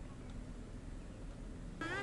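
Faint, steady low rumble of open-air ambience. Near the end comes a short rising call with overtones.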